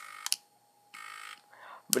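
3.5-inch floppy drive's head stepper motor, driven by an Arduino, buzzing two short notes of about a third of a second each as piano keys are pressed, with small clicks at the key presses.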